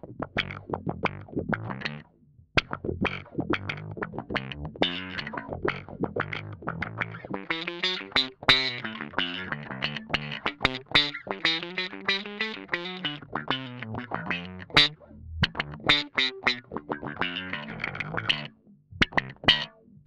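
Electric bass picked with a plectrum through a Way Huge Pork Loin overdrive into a DOD FX25 envelope filter: a distorted riff whose notes are swept by an auto-wah quack, with a trebly bite. The playing stops briefly about two seconds in and again near the end.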